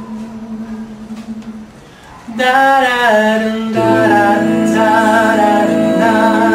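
An a cappella vocal group starts a song. A quiet sustained note comes first, then from about two seconds in several voices enter together in close harmony, with a bass voice joining underneath about a second later.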